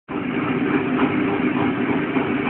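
Steady distorted buzz from an amplified electric guitar, with no chord struck yet.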